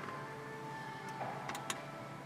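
Soft background music with two sharp clicks about a second and a half in, from a button or control on the Audi MMI console being pressed as the screen changes page.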